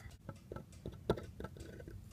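Small clicks and taps of plastic toy figures being handled and moved, a handful of them spread out, the loudest a little after a second in.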